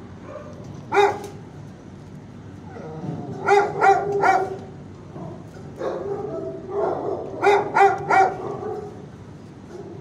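Dog barking indoors in a shelter kennel: a single bark about a second in, a quick run of three barks a few seconds later, then another stretch of barking that ends in three sharp barks.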